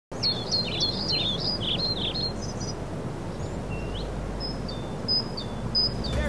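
Small songbirds chirping and singing over a steady low outdoor background noise: a quick run of chirps in the first two seconds, then scattered single high whistles.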